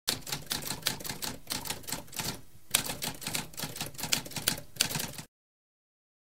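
Typewriter typing: a quick, uneven run of key strikes, with a short pause about two and a half seconds in followed by one sharper strike, then the typing stops abruptly a little after five seconds.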